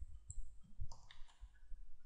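A few soft computer-mouse clicks, grouped near the middle, as spreadsheet data is selected and copied to paste into code.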